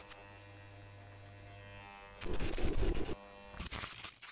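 Electric hair clippers buzzing steadily. Just past the middle a loud burst of noise drowns them out, and a shorter burst comes near the end.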